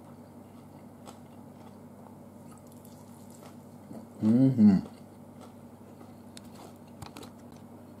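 A man chewing a crispy air-fried chicken wing, with faint scattered crunches, and a short hummed "mmm" with two peaks about four seconds in.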